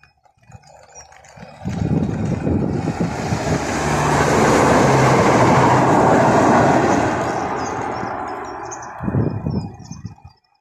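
Passenger train passing over a level crossing: a rushing rumble of wheels on rail that builds quickly about two seconds in, stays at its loudest through the middle and fades away, with a brief louder burst near the end.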